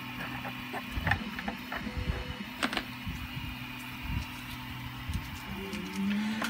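A few light clicks and knocks of 3D-printed plastic parts being handled and fitted together, over a steady low hum.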